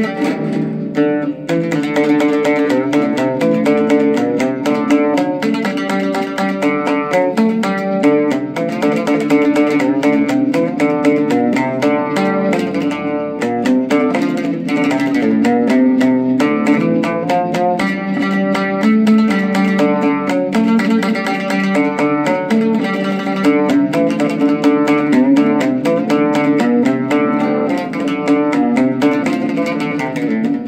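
Solo oud being played, a continuous stream of quickly plucked notes in a running melody.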